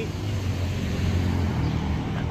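A pickup truck driving past on a city street: a steady low engine drone with road noise.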